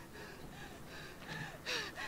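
A woman breathing hard in short, repeated gasps, with a sharper, louder breath near the end.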